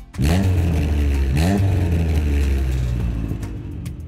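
A large engine revving: it starts suddenly, rises in pitch about a second and a half in, then runs on steadily and eases off near the end.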